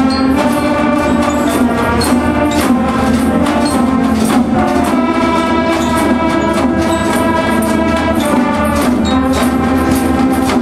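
A live band of brass and wind instruments playing sustained chords together, with occasional percussion strokes.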